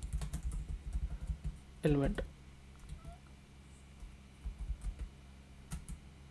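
Typing on a computer keyboard: a quick run of key clicks, a pause, then a few more keystrokes near the end.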